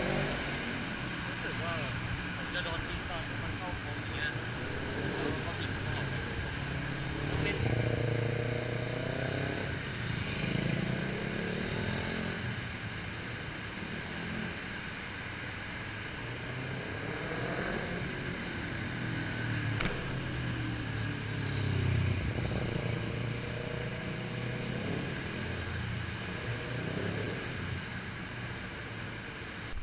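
Motorcycles riding laps past the camera, engines rising and falling in pitch as they accelerate and slow through the course, several passes in turn.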